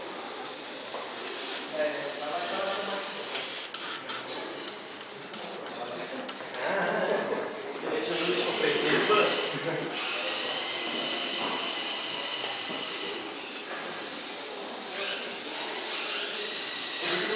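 Indistinct background talk of several people over a steady hiss, with no clear words.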